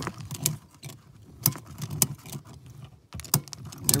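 Metal ratchet-strap buckle being worked to tighten the strap, giving a series of irregular sharp clicks and clacks.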